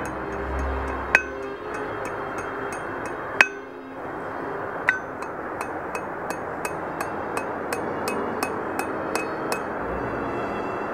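Blacksmith's hammer striking steel round bar on an anvil: three heavy ringing blows, then a steady run of lighter strikes about three a second while the bar is forged.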